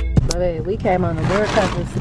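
Mostly speech: a woman talking over the low steady rumble of a car's cabin. It follows a beat of electronic background music that cuts off just after the start.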